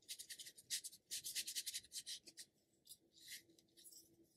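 Ink-loaded brush stroking and dabbing on paper: a quick run of short, dry rustling strokes for the first two and a half seconds, then a couple of sparser ones.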